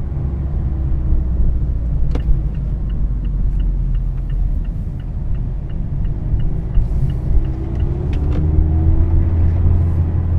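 2017 Mazda Miata RF's 2.0-litre four-cylinder engine and road rumble heard inside the closed cabin while driving. Through the middle a turn signal ticks about three times a second. Near the end the engine note rises as the car accelerates.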